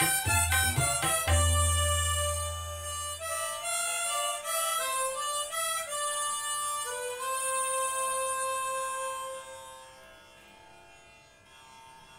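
A group of harmonicas plays a melody together, with tabla accompaniment whose strokes stop about a second in; a last deep bass stroke on the bayan rings out for about two seconds. The harmonicas play on alone, hold a long final note and fade out near the end.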